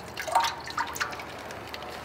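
Water dripping off a lifted plastic-bagged turkey back into a stockpot full of water, a few drops plinking into the surface in the first second, then a faint trickle.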